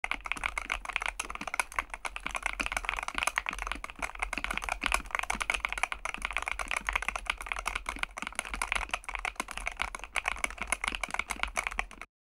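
Fast, continuous typing on a Varmilo Minilo75 HE keyboard: magnetic (Hall-effect) linear switches under PBT Cherry-profile keycaps, in an aluminium-plate, tray-mount case. The keystrokes sound as a dense run of sharp clicks that stops right at the end.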